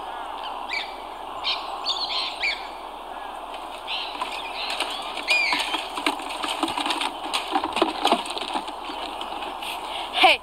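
Birds chirping and calling, many short calls scattered throughout, over a steady background noise.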